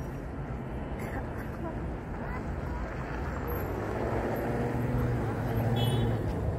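Steady outdoor rumble of wind and traffic with faint voices. A vehicle engine hum grows louder in the second half.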